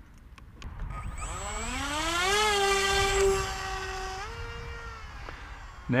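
Electric motor and propeller of a small RC flying wing spinning up: a whine that rises in pitch over about a second and a half, holds steady, steps a little higher, then fades as the plane flies off.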